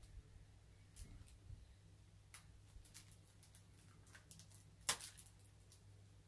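Faint, scattered clicks and scratches of a small blade working at the plastic wrapping of a CD case, the loudest click about five seconds in, over a low steady hum.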